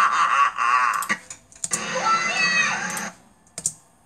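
A cartoon vampire's evil laugh, played from a TV and picked up by a phone in the room, then a second loud cartoon cry that lasts about a second and a half, followed by a couple of sharp clicks near the end.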